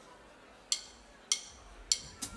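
A drummer's count-in: three sharp, evenly spaced clicks about 0.6 s apart over near quiet, setting the tempo just before the band starts.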